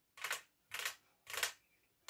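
Mouth noises of someone chewing food close to the microphone: three short chews about half a second apart.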